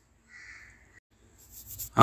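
A single faint, short animal call in the background, lasting about half a second, followed after a pause by a soft rustle just before the voice comes back.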